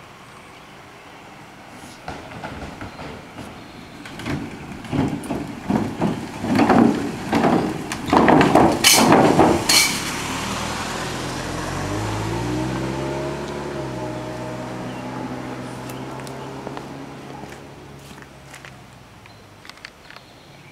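A small sedan driving across the wooden plank deck of an old one-lane covered bridge. The boards knock and clatter under its tyres, louder and quicker as it comes closer, loudest about halfway through. As it passes, its engine hum takes over and fades away as it drives off.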